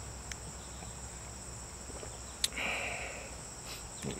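Insects chirping steadily in a high, even trill. A sharp click about two and a half seconds in is followed by a short breathy noise.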